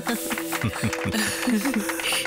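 A small group of people clapping their hands, a fast, uneven patter of claps, over background music.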